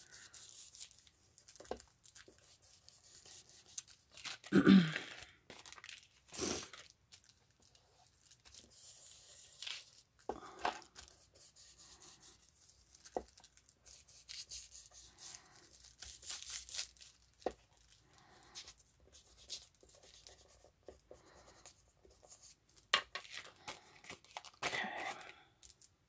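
An ink blending tool rubbed in short, irregular strokes over a paper CD sleeve, the paper rustling and crinkling, with a few small sharp taps.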